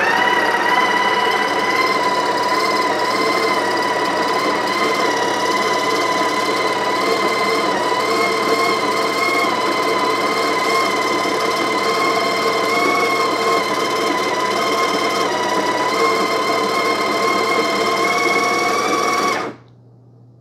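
Breville Barista Express's built-in conical burr grinder running steadily with a held, whining tone as it grinds beans into the portafilter, then cutting off suddenly near the end. This is an automatic double-dose grind, started when the portafilter pressed the cradle's micro switch.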